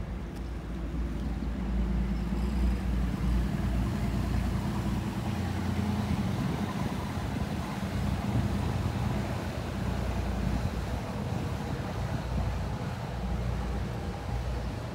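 Engine of a small river sightseeing boat running as the boat passes under the bridge and pulls away, a steady low hum that swells about two seconds in.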